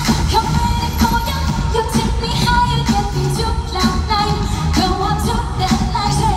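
Live dance-pop song played through an arena PA, a sung lead vocal over a steady, regular beat and heavy bass.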